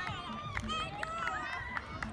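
Several people's voices overlapping, players calling out to one another in a ball game on a field, with a few short sharp knocks.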